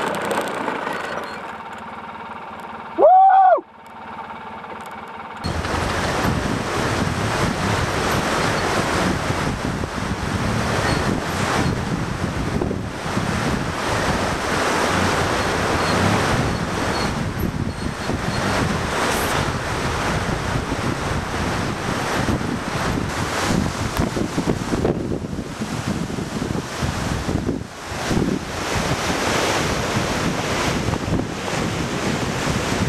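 An ATV riding down a loose rocky mountain trail, with wind buffeting the microphone, which dominates as a dense, rough rushing noise from about five seconds in. About three seconds in there is a single short, loud pitched tone that rises and then falls.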